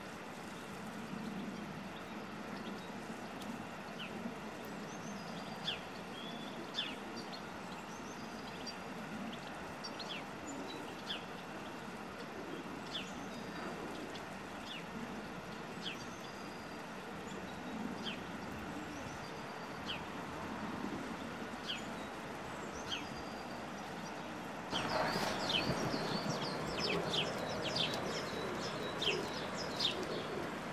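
Songbirds chirping outdoors over steady background noise, in short sharp chirps every second or two. About 25 seconds in, the background gets louder and the chirping busier.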